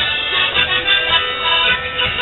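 Folk band playing a lively dance tune for the dancers, led by an accordion with steady, held reedy notes over a drum.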